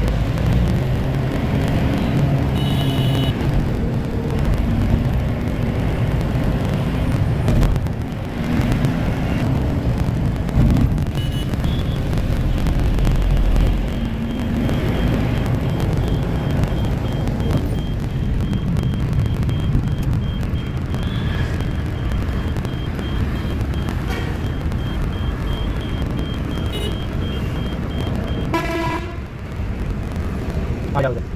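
Tempo Traveller minibus running through city traffic, heard from inside the cabin as a steady engine and road rumble. Vehicle horns toot briefly about three seconds in and again near the end, and a faint high beep repeats evenly through the middle stretch.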